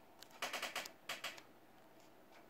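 Two short bursts of rapid small clicks and rattles, the first about half a second in and the second about a second in, from the die-cast Matchbox toy tow truck being handled on the tabletop.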